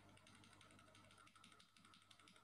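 Near silence: faint, rapid, irregular clicking of a computer keyboard being typed on, over a low steady electrical hum.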